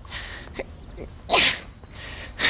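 A puppet character's voice letting out one short, breathy vocal burst with falling pitch about a second and a half in.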